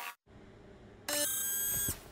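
Cartoon sci-fi sound effect: a steady electronic buzz of several high tones, starting about a second in and cutting off sharply after under a second.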